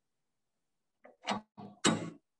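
A few short metallic knocks and clicks from a tool holder being seated and clamped on a lathe's tool post, starting about a second in, the last knock the loudest.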